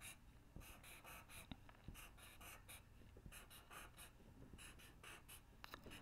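Faint scratching of a marker drawing on paper: many short strokes, several a second, with brief pauses, as small squares are drawn one after another.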